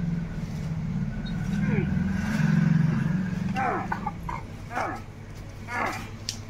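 A motor vehicle's engine drones steadily, loudest about two to three seconds in and fading out by about four seconds. It is followed by a few short falling voice-like calls.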